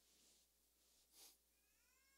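Near silence in a pause, with a short faint sniff about a second in as a handkerchief is pressed to the nose, then a faint high, rising tone near the end.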